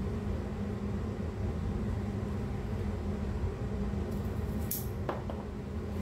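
Steady low background hum, with one short sharp snip about five seconds in as bonsai shears cut through the soft, succulent stem of an adenium (desert rose).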